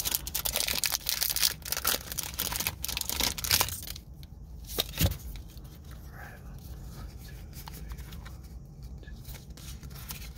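A foil Pokémon booster pack wrapper crinkling and tearing open for about four seconds. Then it goes quieter, with a single sharp click about five seconds in and the light sound of the cards being handled.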